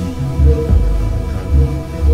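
Live electronic music from a laptop-and-mixer setup: a few deep throbbing bass pulses over a steady droning hum of sustained tones.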